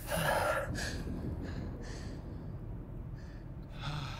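A person gasping for breath: one strong, noisy breath at the start, then fainter breathing over a low, steady rumble.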